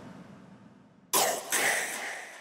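The last hit of a hardstyle mix dies away in a fading echo. About a second in comes a sudden short, rasping burst in two pushes, which fades out.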